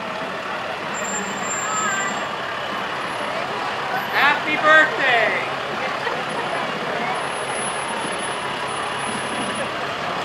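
A pickup truck towing a parade float rolls slowly past with its engine running, under a steady bed of crowd chatter. About four seconds in, a voice calls out loudly twice.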